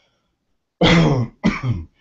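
A man clearing his throat twice in quick succession, starting just under a second in.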